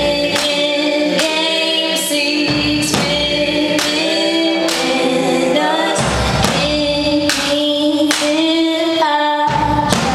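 Live band music with a woman singing long held notes into a microphone, over a low bass line and heavy drum beats landing roughly once a second.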